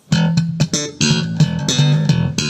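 Electric bass played through a brand-new Gallien-Krueger 410 NEO speaker cabinet, driven by a GK 1001RB head, while the new speakers are being broken in. It plays a short phrase of plucked notes with sharp attacks, with a brief gap a little before one second in.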